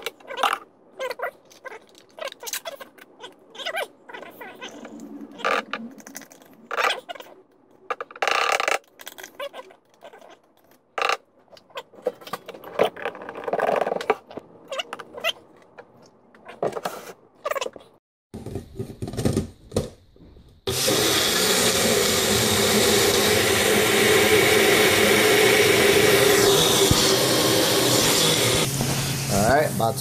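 Knocks and clatter of jars, a scoop and a plastic milk jug being handled and set down on a kitchen counter. About two-thirds of the way in, a single-serve blender starts and runs loud and steady, blending a protein shake.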